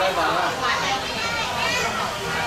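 People talking in Thai, with young children's voices among them.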